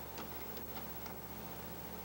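Faint steady hiss and hum of an old videotape recording, with a few soft ticks in the first second or so.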